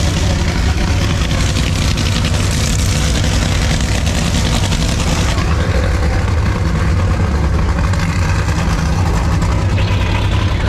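Steady low engine drone heard from inside a vehicle cabin, with a hiss of higher noise that drops away about five seconds in.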